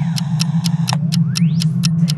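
Trailer soundtrack: a steady low drone under a sharp, even ticking about four times a second, with a rising sweep about a second in.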